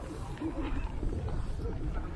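Faint, distant voices of people out on the frozen lake over a steady low rumble.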